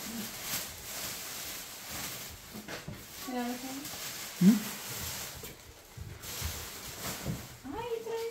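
Faint, brief voices over low background noise: a short utterance about three seconds in and a quick rising vocal sound about four and a half seconds in.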